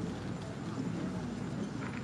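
Footsteps on a hard floor, with the steady hum of a large hall behind them.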